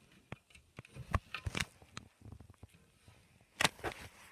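A series of sharp clicks and knocks from the glass front doors of a terrarium being opened, with two louder knocks, one about a second in and one near the end.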